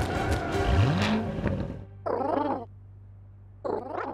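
Two short, wavering coos from a giant cartoon pigeon, one about two seconds in and another near the end, after a stretch of busy music and sound effects.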